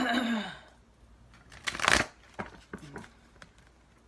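Tarot cards being shuffled by hand: one loud shuffle about two seconds in, followed by a few softer strokes of the cards.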